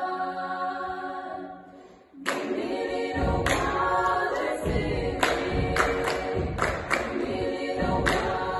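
Female a cappella choir holding a chord that dies away about two seconds in. After a brief pause they come in loudly with a rhythmic passage, with sharp hand claps punctuating the singing.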